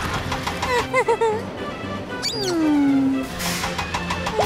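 Cartoon background music, with a short wavering squeak about a second in and then a long falling whistle-like glide as a sound effect.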